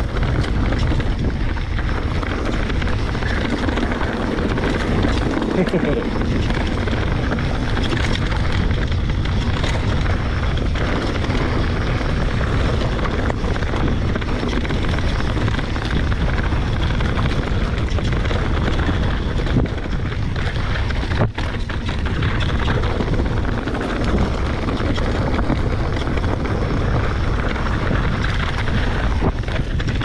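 Steady rushing noise of wind buffeting a bike-mounted camera's microphone, mixed with a Santa Cruz Bronson mountain bike's tyres rolling over loose, rocky trail on a fast descent, with a brief dip about two-thirds of the way through.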